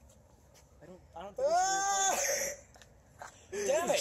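A boy's voice letting out one drawn-out cry, rising then falling in pitch, about a second and a half in and lasting about a second.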